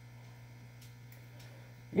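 Low, steady electrical mains hum under quiet room tone, with a couple of faint soft ticks from a cardboard product box being handled.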